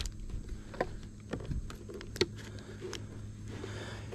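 A few light clicks and taps as a trail camera's solar panel mount is adjusted and tightened by hand, the sharpest click a little past two seconds in.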